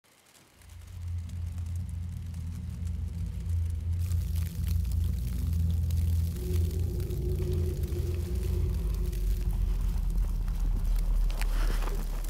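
A low, steady rumbling drone fades in over the first second. About four seconds in, a windy hiss with scattered crackles joins it, and a faint steady tone sits above it in the middle.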